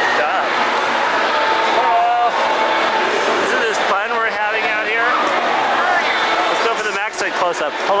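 People talking and calling out close by over a steady crowd din in a large, echoing hall.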